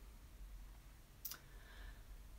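Near silence: room tone with a low steady hum, and one brief click just over a second in.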